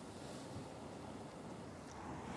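Faint, steady wash of distant ocean surf, mixed with light wind on the microphone.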